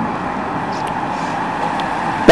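Steady outdoor road noise, an even rushing hiss, as a pack of racing bicycles comes along the road toward the microphone.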